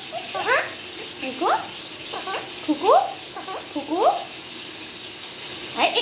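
Alexandrine parakeet making a run of short rising chirps, about seven in the first four seconds, each sweeping quickly upward in pitch.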